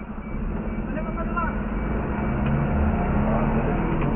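Fire truck engine running at idle, then getting louder about two and a half seconds in as the truck pulls away from a stop, heard from inside the cab.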